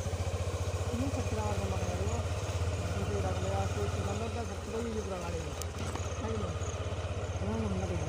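Motorcycle engine running at a steady cruise while riding, a low even drone. A voice talks faintly over it.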